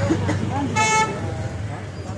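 A single short horn toot about a second in, held briefly at one steady pitch, over crowd chatter.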